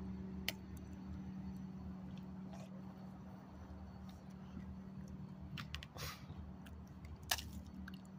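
A few short, sharp knocks of a small hammer cracking ice, spaced apart near the end, over a steady low hum.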